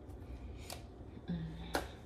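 Light handling sounds as chopped cilantro is dropped by hand into a blender jar: two sharp clicks about a second apart, with a brief low hum from a woman's voice between them.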